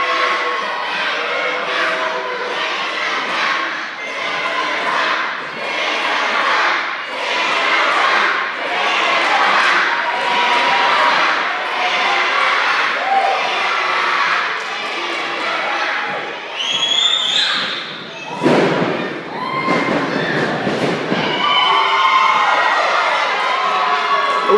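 Wrestling crowd in a large echoing hall shouting and calling out, with scattered thuds among the voices. A high rising squeal cuts through about two-thirds of the way in, followed by a loud noisy burst of a couple of seconds.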